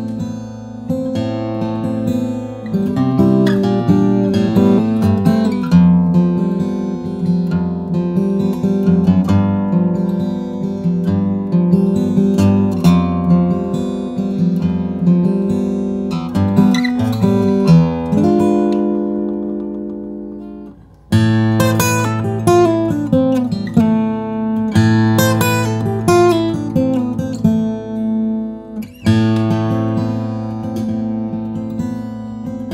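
Steve Fischer Aria steel-string acoustic guitar in Honduran mahogany and yellow cedar, played fingerstyle: picked notes and chords with a rounded, nylon-like attack. About eighteen seconds in a chord is left to ring and die away, then the playing starts again with descending runs.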